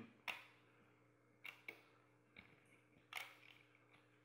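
Quiet, sparse clicks and taps of rubber bands being worked off the plastic pegs of a Rainbow Loom by hand: about five in four seconds, the sharpest about a quarter second in, over a faint steady hum.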